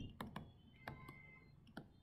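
About five faint, separate clicks at uneven intervals against near silence, from a computer input device being worked while a word is hand-written on screen.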